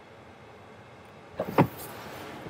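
Quiet car-cabin hiss, then two quick clicks about one and a half seconds in as the rear door latch is released and the door opens.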